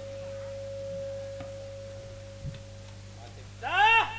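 A single steady pure tone held for about three seconds and then dying away, over a constant low electrical hum from the stage sound system. Just before the end a man's voice cries out loudly.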